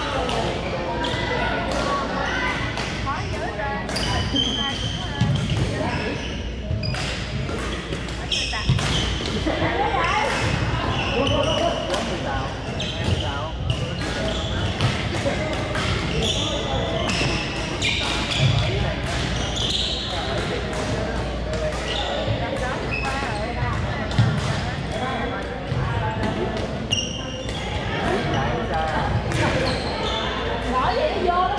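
Pickleball paddles hitting plastic balls and balls bouncing on a hardwood gym floor, many sharp pops scattered irregularly from several courts at once, echoing in a large hall over the chatter of voices.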